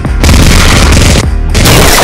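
Gunfire sound effects in two long, loud bursts, each about a second, with a short break a little after one second in; the shots are hitting a cardboard box. Background music runs underneath.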